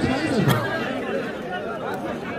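Men's voices talking over one another in a watching crowd, with one sharp click about half a second in.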